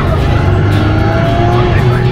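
Radiator Springs Racers ride car running fast along its track, a loud steady rumble of motor, wheels and wind, with music mixed in.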